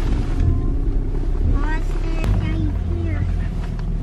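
Ram pickup truck engine running at low speed, heard as a steady low rumble from inside the cab while the truck reverses with a trailer in tow. A few brief voice sounds come in around the middle.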